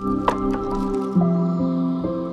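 Lo-fi hip-hop music: held chords, with a sharp click about a quarter second in and a change of chord a little past a second in.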